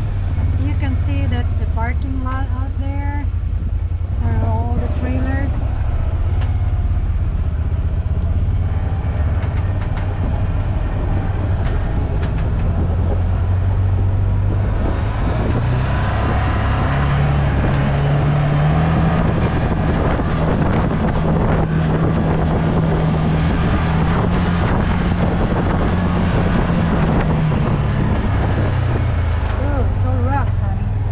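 Can-Am Maverick side-by-side running with a steady low engine drone, heard from inside its open cab. About halfway through the engine note rises and holds higher as the machine picks up speed, and the noise of tyres on dirt and wind grows louder.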